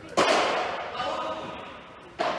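A padel ball struck hard: a sharp crack just after the start that rings on for about a second and a half in the covered hall, with voices over it.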